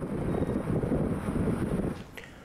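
Wind buffeting the microphone over the low road rumble of a moving vehicle, starting abruptly and cutting off just before the end.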